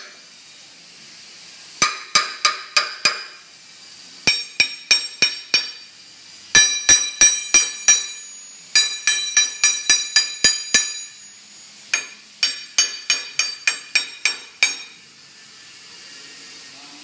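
Metal steering rods, an aluminium alloy rod and a steel rod, being tapped, each strike giving a bright ringing clink. The taps come in five quick runs of about six to ten strikes, with short pauses between.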